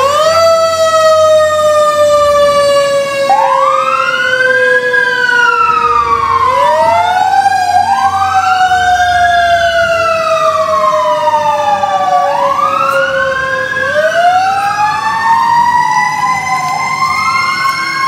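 Fire engine sirens: one long tone rises sharply at the start and slides slowly down for about fourteen seconds before winding up again, while a second siren wails up and down about every four to five seconds from a few seconds in. The truck's engine rumbles low beneath them.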